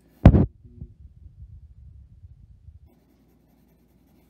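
A sharp knock, then about two seconds of faint, uneven low scrubbing from a pencil shading on paper over a drawing board, stopping about three seconds in.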